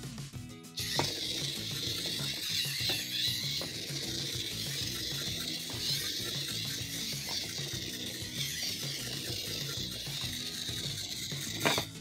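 The battery-powered motor and plastic gears of a remote-control building-block toy truck run as it drives, a steady high-pitched noise that starts about a second in and stops near the end. Background music with a steady beat plays underneath.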